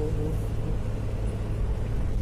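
A car driving, heard from inside the cabin: a steady low rumble of engine and road noise.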